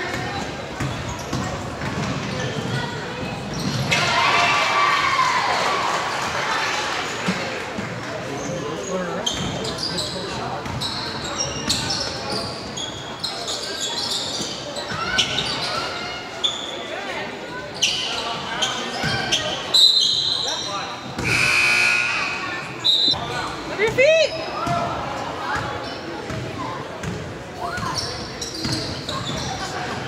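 Basketball game in a gym: the ball dribbling and bouncing on the hardwood floor, with sneakers squeaking and players and spectators calling out, all echoing in the large hall.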